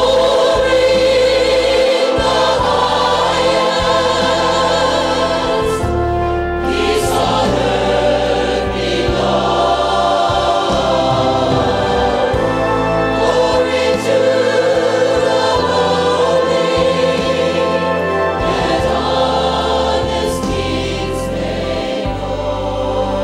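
A church choir and a female soloist singing a gospel-style Christmas song with instrumental accompaniment, in long held notes with vibrato.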